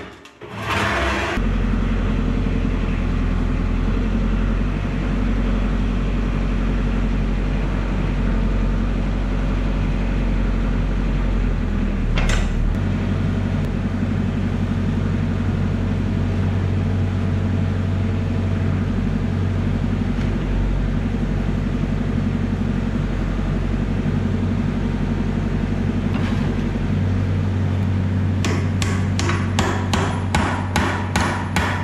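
Kubota KX121-3 excavator's diesel engine running steadily, its note shifting once about 12 seconds in just after a single clank, and again later. Near the end a quick run of hammer blows on steel, about three a second.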